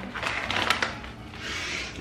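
Foil-lined chip bag crinkling as it is handled, mostly in the first second.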